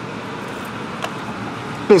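Steady background noise with a faint click about a second in, then a man's voice starting to speak near the end.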